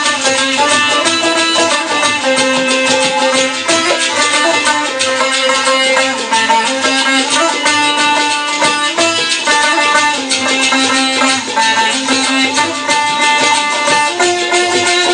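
Two sitars playing a fast plucked melody in Pothwari folk style: dense, rapid picking, with held notes that shift every second or so, and no pause.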